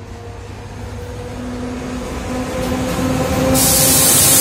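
ČD class 750 'Brejlovec' diesel locomotive approaching and drawing level, its engine hum growing steadily louder. A sudden loud hiss starts about three and a half seconds in as it passes close.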